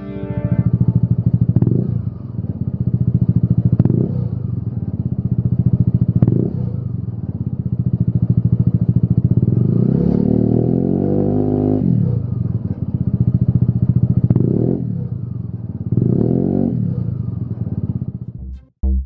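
Peugeot Speedfight 125 scooter engine running through a Lextek GP1 aftermarket silencer: a steady idle broken by about five short throttle blips, and one longer rev about ten seconds in that climbs, holds and falls back to idle.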